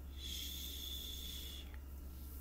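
A woman shushing: one long, soft "shhh" lasting about a second and a half, a call for quiet so a sleeping dog is not woken.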